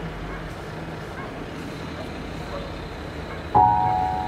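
Steady ambient soundscape noise with a low hum, then about three and a half seconds in a sudden ringing pitched note that sets in sharply and holds.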